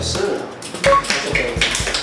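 A few hand claps from onlookers applauding a scored billiards shot, with short sharp claps scattered through the moment.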